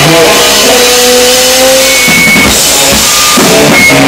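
Loud rock music: held guitar notes over a band, giving way about halfway through to a stretch of drums before the guitar notes return.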